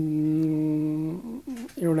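A man's voice holding a level, drawn-out hesitation hum, "mmm", for about a second, then breaking back into speech.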